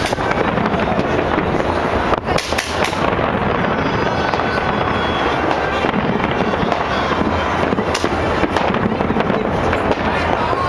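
Fireworks display: the continuous crackle and popping of many fireworks going off, with sharper single bangs about two seconds in and again around eight seconds.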